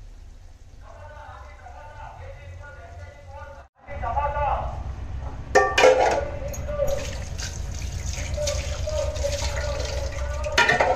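Fish curry bubbling at a rolling boil in an aluminium pot on a gas burner, under a low steady rumble. Faint voices sound in the first few seconds. After a brief break, the bubbling is louder and closer, with a few sharper pops about two seconds later.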